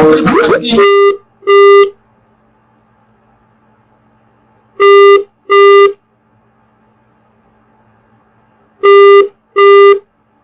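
Telephone ringing tone heard down the line: three double rings, each pair of short beeps repeating about every four seconds, with a faint steady hum between them. It follows a brief snatch of voice or music that cuts off in the first second.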